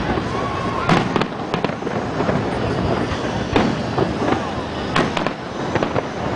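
Aerial firework shells bursting in an irregular series of sharp bangs, about eight in all, the strongest about a second in and about five seconds in.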